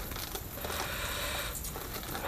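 Faint handling noise from a three-speed quad gearbox's gear shafts: loose steel gears shifting and clinking on their shafts, with plastic wrapping rustling.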